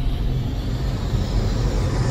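Cinematic logo-sting sound effect: a steady, deep rumble with a hiss of noise over it.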